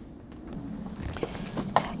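Quiet handling noise from gloved hands working a succulent and coarse potting grit, with faint rustling and a few light scrapes in the second half.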